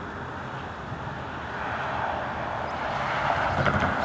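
GO Transit commuter train approaching: a steady diesel drone under a rushing rumble that grows louder through the second half.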